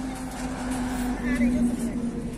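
Road traffic running by, with a steady engine hum and faint voices of people around.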